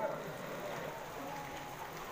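A pause in speech filled by a faint, steady hiss of background noise, with no distinct event.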